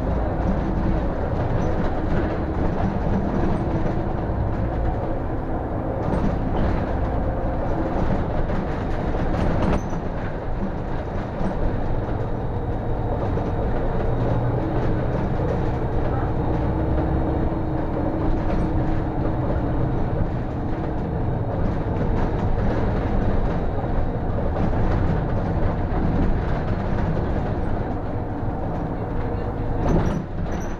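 City bus running along a country road, heard from inside at the driver's cab: a steady engine and road rumble with light rattles.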